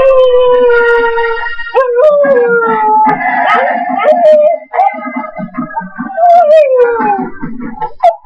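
A husky howling in long, drawn-out notes that waver and slide downward in pitch, with a short break about halfway through and a long falling howl near the end.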